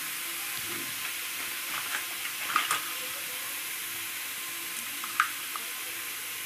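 Onion and garlic frying in oil in a kadhai, a steady sizzle. A few light clicks come about two to three seconds in and again near five seconds.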